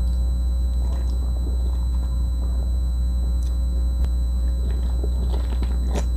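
Steady low electrical hum with a buzzing row of overtones, over faint scattered clicks and mouth sounds from drinking beer out of a can. The small sounds come more often in the second half.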